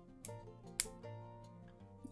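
Quiet background music, with two sharp metallic clicks from smooth-jawed pliers working steel jump rings: one about a quarter of a second in and a louder one just under a second in.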